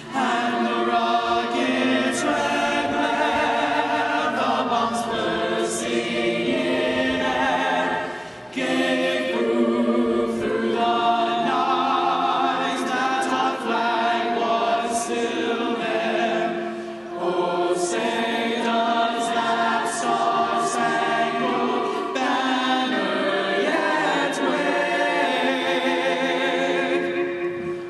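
Choir singing a cappella in held, multi-part chords, with two short pauses between phrases.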